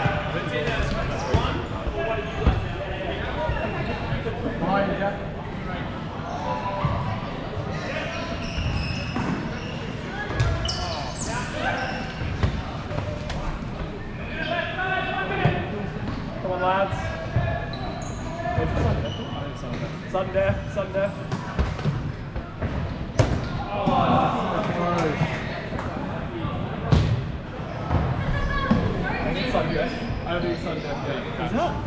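Rubber dodgeballs being thrown, thudding off players and bouncing on the court floor, several sharp hits scattered through, in a large indoor sports hall. Players are shouting and chattering throughout.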